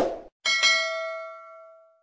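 Subscribe-button notification bell sound effect: a short sharp noise at the very start, then a single bright ding about half a second in that rings on and fades away over about a second and a half.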